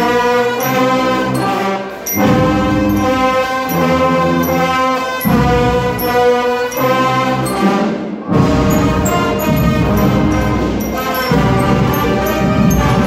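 Guggenmusik carnival brass band, with sousaphones, playing loudly as it marches in: sustained brass chords change every second or two. There is a short break about eight seconds in, and then the band comes back in with a deeper, fuller sound.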